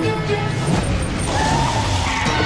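Film score music, joined from about halfway through by a car engine and tyres as a vehicle drives up, with a rising whine.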